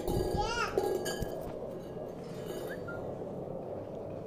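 A puppy gives a brief high-pitched yelp that rises and bends in pitch about half a second in, with a tiny short squeak near the three-second mark.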